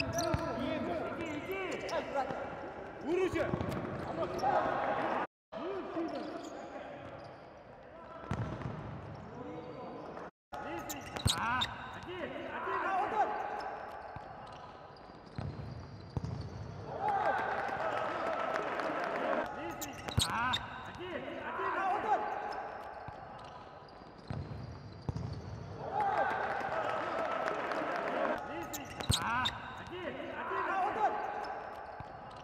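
Futsal ball being kicked and bouncing on an indoor court, with sharp thuds of passes and shots. Players shout to each other, and the sound is cut off abruptly twice between highlight clips.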